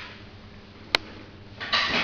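Camera handling noise: a single sharp click about halfway through, then a short rustle near the end, over low background hiss.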